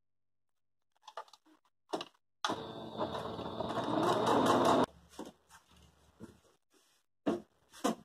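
Electric sewing machine stitching through layered cotton patchwork scraps for a little over two seconds, speeding up partway through. A few light clicks and knocks come before and after the run.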